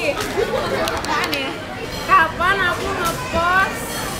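Speech: people chatting at a table, with more voices from the room behind.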